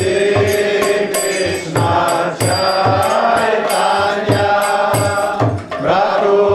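Kirtan: a lead singer chanting a devotional mantra into a microphone over a mridanga drum beating a steady rhythm, about two to three strokes a second, with hand cymbals (karatals) clashing on the beat.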